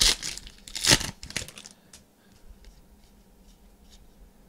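Basketball trading-card pack wrapper being torn open by hand: two loud rips within the first second, followed by a few smaller crinkles.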